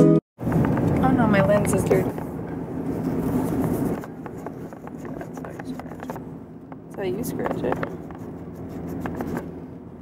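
Sounds inside a car: the car's steady low running hum under rustling as the camera is handled, with brief muffled voices. The first few seconds are louder than the rest.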